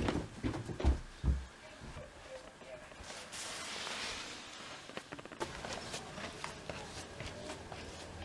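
Footsteps in a hallway, with two low thumps about a second in, then the rustle of a fabric jacket being pulled off a wall coat hook, followed by scattered light clicks and taps.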